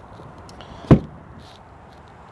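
One short, sharp knock about a second in, over a low steady background hiss.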